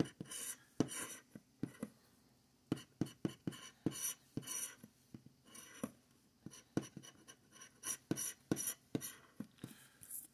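Scratch-off lottery ticket being scratched with a handheld scratcher: short rasping strokes and clicks in irregular bunches, with brief pauses about two and five seconds in.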